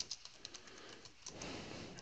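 Faint clicks of computer keys as a command is typed, a few light ticks spread through the two seconds.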